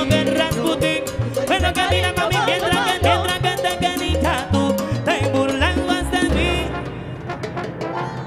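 Live salsa band playing, with horns over a steady bass and percussion beat. The music thins out and gets a little quieter after about six seconds.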